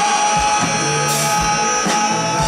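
A live indie electro-pop band playing: electric guitars, keyboard and drum kit, with a note held steadily over kick drum thumps and cymbal washes.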